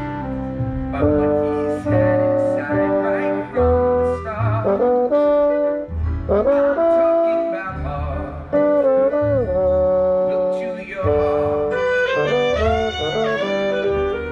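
Pit orchestra playing show music, with brass to the fore and a slide trombone playing close to the microphone. Low bass notes sound underneath.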